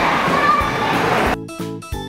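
Hubbub of many children's voices in a busy indoor play area, cut off abruptly about a second in by background music with clear, evenly paced notes.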